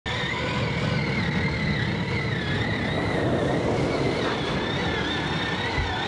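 Electric motor of a battery-powered toy ride-on jeep running, a steady high whine that wavers slightly in pitch over a dense low rumble.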